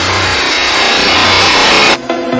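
A rising noise sweep in an electronic dance track's build-up, growing louder and brighter with a low bass under most of it. It cuts off suddenly at the end as the beat drops back in.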